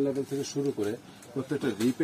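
A man speaking: only talk, the recogniser wrote no words for it.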